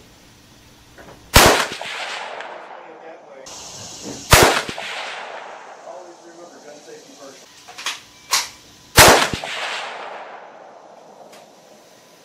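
.243 Winchester hunting rifle firing three shots a few seconds apart, each a sharp crack followed by a long echo dying away. Two smaller sharp clicks come shortly before the third shot.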